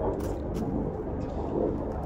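A low, steady rumble with no distinct event standing out, heard outdoors.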